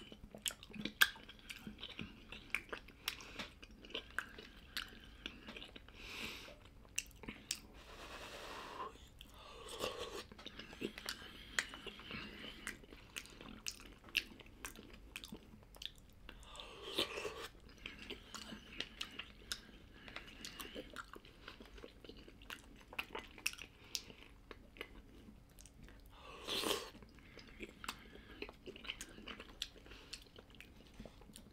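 A person eating ground-meat soup by the spoonful close to the microphone: chewing with many small wet mouth clicks, and a few short, louder, noisier moments about 6, 9, 17 and 26 seconds in.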